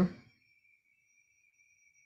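Near silence in a pause between spoken phrases, the end of a woman's word fading out at the start, with only a faint steady high tone in the background.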